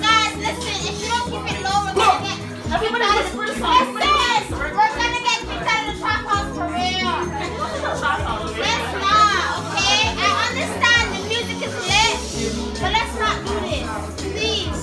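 Lively party crowd: many voices shouting, laughing and squealing over one another, with loud music and a steady bass line underneath.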